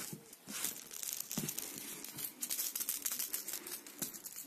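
A hand rubbing and scratching across a pile carpet: a dense, scratchy rustle of many quick scrapes, with one soft knock about a second and a half in.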